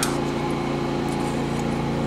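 Steady low machine hum, with a short sharp click right at the start.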